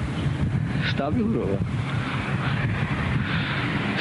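Heavy wind buffeting an outdoor handheld microphone, a steady rumbling noise, with a voice speaking briefly about a second in.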